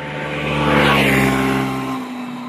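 A motor vehicle passing close by, engine and tyre noise growing to its loudest about a second in and then easing off.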